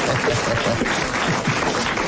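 Studio audience and panel laughing, many voices overlapping in a dense, continuous wash of laughter.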